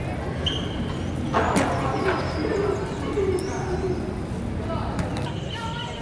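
Inline skate wheels rolling on smooth concrete, with a sharp clack about one and a half seconds in as the skates land from a small jump.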